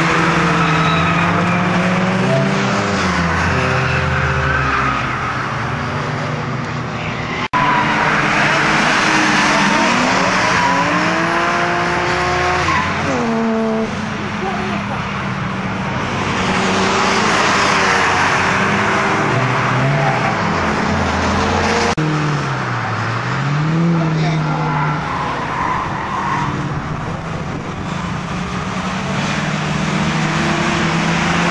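Cars driven hard around a racetrack, engines revving up and down through gear changes, with tyres squealing at times. The sound cuts abruptly twice as the shots change.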